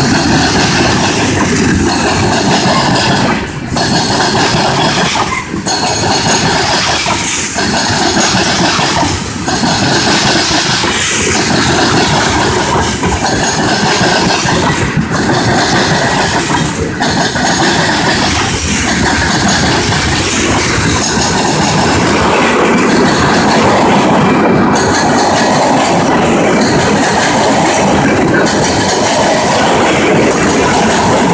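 Freight train's covered hoppers and tank cars rolling past close by: a loud, steady rattle and rumble of steel wheels on rail, dipping briefly about every two seconds as car ends go by.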